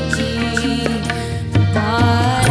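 Small Hindustani film-song orchestra playing an Indian film song, with violin and clarinet holding notes over a bass line, punctuated by drum strokes.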